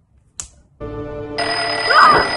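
A short click, then a steady electronic tone with several pitches held together that starts just under a second in. About halfway through, a higher shrill tone and a hiss join it.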